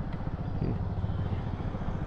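A motorcycle engine idling steadily, a fast even putter of exhaust pulses.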